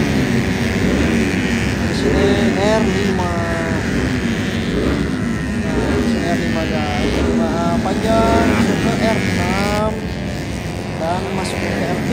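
Several small-capacity racing scooters, 113–150 cc, running hard around a track. Their engine pitch climbs again and again as they accelerate out of the corners, with several bikes overlapping.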